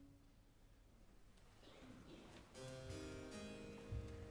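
A quiet pause in a Baroque opera recording as a last string note dies away. About two and a half seconds in, soft harpsichord chords begin and ring on: the continuo accompaniment that opens a recitative.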